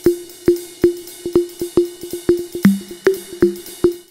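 Short drum music: a quick run of tuned drum hits, several a second with one lower-pitched hit a little past the middle, over a steady hissing hi-hat and cymbal, stopping abruptly at the end.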